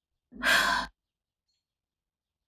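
A person sighing: one short breath out, lasting about half a second.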